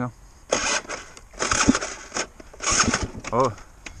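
Enduro dirt bike being started and failing to catch: three short start attempts of about half a second each, with no running engine until afterwards.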